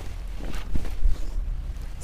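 Poly-cotton suit fabric rustling as it is unfolded and spread out by hand, over a steady low rumble.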